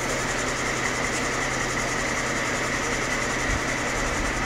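Fire engine's engine running steadily to drive its hydraulic aerial ladder, a constant drone with a thin high whine over it.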